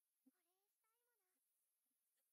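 Near silence, with only a very faint voice in the background.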